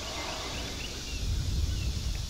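Outdoor ambience: a steady low rumble with a few faint, short, high chirps of birds.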